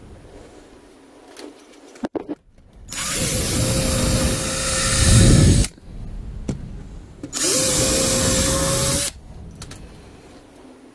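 DeWalt cordless drill driving screws into a wooden framing board, in two runs: one of nearly three seconds starting about three seconds in, growing louder near its end, and a shorter one a couple of seconds later. Each run starts with the motor quickly spinning up to a steady whine.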